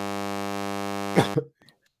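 Steady electrical mains buzz with many overtones from a faulty microphone feed, which cuts off suddenly about a second and a half in as the fault is fixed. A short laugh sounds just before it stops.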